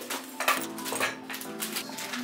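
Background music with three or four sharp metallic clicks and clinks spread through the middle, from a metal light stand's legs and clamps being unfolded and locked.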